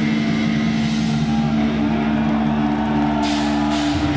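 Extreme metal band playing live: guitars and bass hold one long, sustained chord with little drumming, and cymbal crashes come in about three seconds in.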